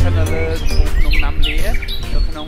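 Birds chirping in short, quick up-and-down calls, over background music.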